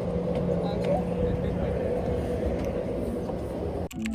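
Outdoor street ambience: a steady rumble of traffic with a sustained low hum and voices in the background. It cuts off abruptly at the very end.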